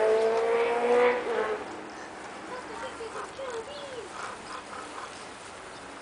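Miniature dachshund puppies vocalising while they play-fight: a long, slowly rising whine that stops about a second and a half in, followed by a few short whimpering whines.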